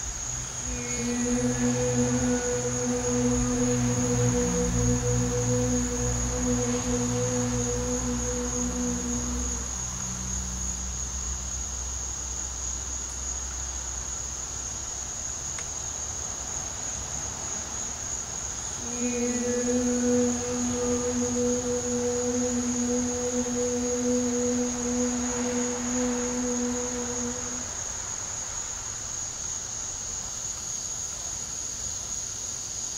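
A woman's voice chanting the Qi Gong healing sound 'ka' twice, each a single steady tone held for about nine seconds with a pause between. Insects trill steadily and high-pitched throughout.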